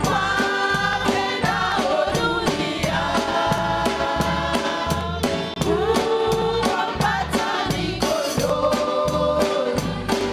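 A small church worship team singing a Swahili hymn together in harmony through microphones, over a steady beat.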